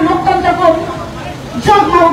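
A woman speaking, with a short pause about a second in before her speech resumes near the end.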